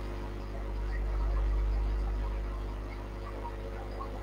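Steady low electrical hum with a faint hiss, swelling slightly about a second in and settling again: a technical fault in the recording's sound.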